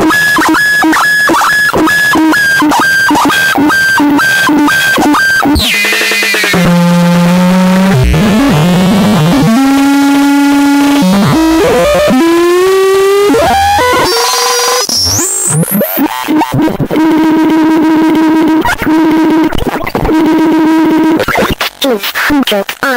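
Circuit-bent speech circuit of a VTech My First Talking Computer putting out loud glitch noise. Its tones stutter rapidly for about five seconds, then give way to a held drone that steps and slides in pitch. A sharp upward sweep follows, and the rapid stuttering tones return near the end.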